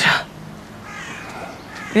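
A short spoken "Tja", then a faint bird call in the quiet background over a low hum.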